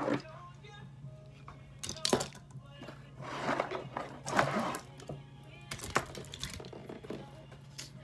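Cardboard box and a string of plastic mini Christmas lights being handled as the lights are pulled out of the box, rustling and crinkling in several short bursts. Faint background music runs underneath.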